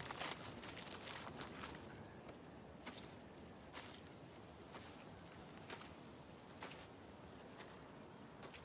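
Slow footsteps on woodland ground, roughly one step a second, faint over a quiet outdoor hush.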